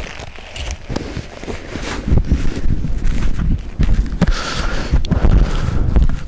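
Wind buffeting an outdoor microphone: a gusty low rumble with crackles that gets louder about two seconds in.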